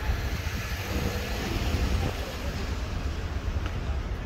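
City street traffic: a steady rumble of cars, vans and buses running along a busy road.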